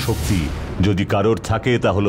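A short noisy burst like a dramatic sound-effect hit, then a person's voice speaking over a low, steady music drone.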